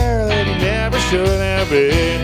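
Live band playing, with guitar in the mix and a melody line of long, sliding held notes over the band.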